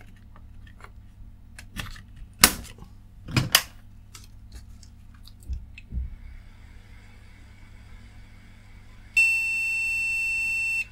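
A few sharp clicks as a RAM module is pressed home into its slot. Near the end the motherboard's beeper starts one long, steady beep, the board's warning that it detects no RAM even with a good DDR module fitted.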